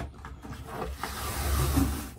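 An old peel-and-stick bathtub mat being pulled up off the tub floor by hand: soft peeling and rubbing of its backing against the tub, with a few faint clicks early on and a low rumble in the second half.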